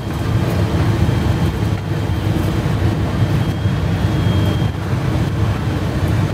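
Semi-truck cab interior while driving: a steady low rumble of the Cummins ISX diesel engine and road noise.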